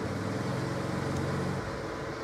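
A low, steady engine-like hum that eases off briefly near the end.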